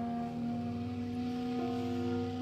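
Live ensemble holding long, steady tones: two clarinets sustain a chord over a low held note, and one note moves to a new pitch about one and a half seconds in.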